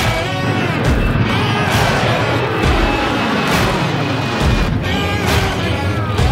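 Twin-engine jet airliner taking off and passing low overhead: a loud engine roar that slides down in pitch as it goes by.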